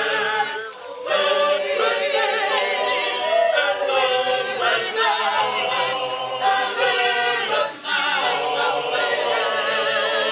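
Choral music on the soundtrack: a choir singing held notes with vibrato, the phrases breaking briefly about a second in and again near the eighth second.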